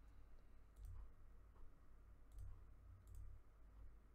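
A few faint computer mouse clicks, spaced out, over near silence with a low steady hum.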